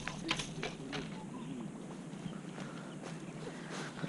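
Faint handling noise of a baitcasting rod and reel while a hooked peacock bass is brought in: a few sharp clicks in the first second, then scattered light ticks over a low steady hiss.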